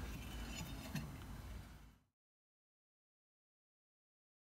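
Scissor jack being cranked down by its handle, with faint clicks and scrapes from the turning screw as the car is lowered. About two seconds in the sound cuts off abruptly to dead silence.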